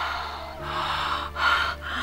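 A woman breathing in several heavy, gasping breaths, the laboured breathing of someone sick, over a low, steady background music drone.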